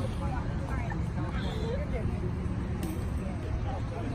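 Faint, scattered voices and chatter of people on an open ballfield over a steady low background rumble, with no single loud event.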